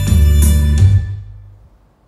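Instrumental music played through a pair of BMB CSD-2000C karaoke speakers, with a heavy bass line; the track fades out over the second half and ends in near silence.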